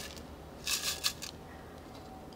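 Gritty bonsai soil mix poured from a metal soil scoop onto a pot: a brief dry rattle of small grains, about half a second long, starting just over half a second in.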